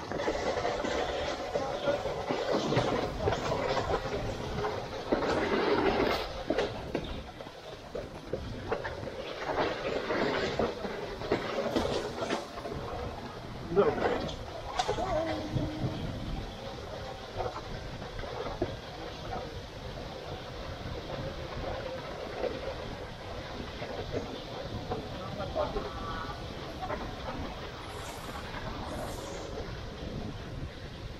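Wicker Monte toboggan's wooden runners sliding over asphalt at speed: a continuous rumbling, rattling scrape, louder and rougher in the first half and evening out after about 17 seconds, with a few brief shouts from the drivers.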